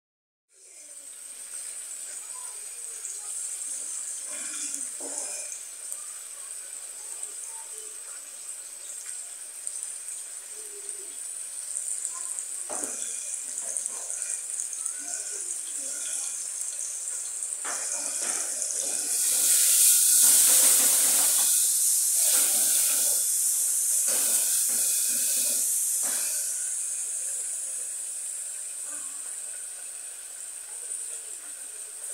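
Chicken pieces and then a chopped seasoning base frying in hot oil in the pan, a steady high sizzle. The sizzle swells much louder about two-thirds of the way through, with a few short knocks of the spatula against the pan.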